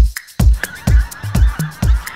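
Electronic dance music with a heavy kick drum at about two beats a second, and from about half a second in, a large flock of pink-footed geese calling over it.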